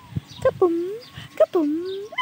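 Two short, high-pitched wordless voice sounds, each sliding down in pitch and back up.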